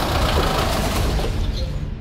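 SUV engine running with tyre noise as the vehicle drives in, the sound slowly dying away and its upper hiss cutting off suddenly just before the end.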